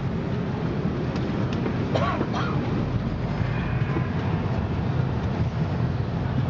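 Steady low rumble of an Airbus A340-300's cabin air system at the gate during boarding.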